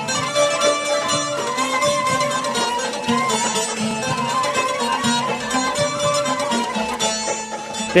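Background music: traditional-style music carried by a plucked string instrument playing quick, dense runs of notes.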